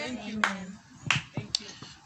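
A man's voice holding a low note and trailing off, then about five faint, sharp clicks scattered over the next second and a half.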